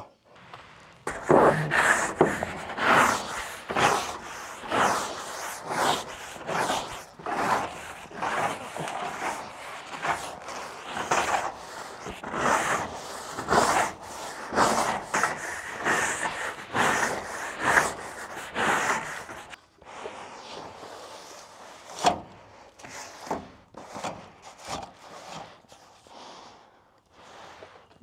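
A long-handled broom sweeping debris off a corrugated iron roof: a steady run of scraping strokes, about one and a half a second. After about twenty seconds the sweeping stops, and a few scattered scrapes and knocks follow.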